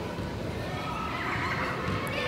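Distant players' shouts and calls echoing in a large indoor hall, over a low steady rumble.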